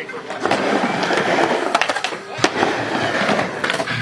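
Skateboard wheels rolling on a wooden mini ramp, with several sharp clacks of the board striking the wood, the loudest about two and a half seconds in.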